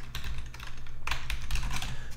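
Computer keyboard being typed on: a run of quick keystrokes over a low steady hum.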